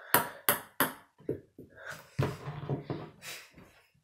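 Ping-pong ball bouncing off a paddle and a wooden table, sharp taps about three a second that stop after about a second. Softer, duller knocks and shuffling follow.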